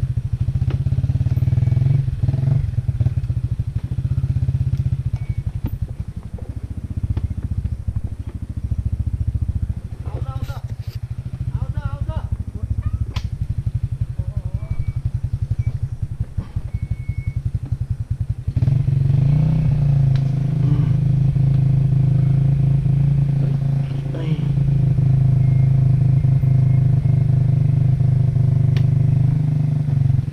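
Single-cylinder dirt bike engine running at low revs with a rapid, even chug as it crawls over steep mud and loose ground. About two-thirds of the way in it revs up and holds a louder, higher-pitched note.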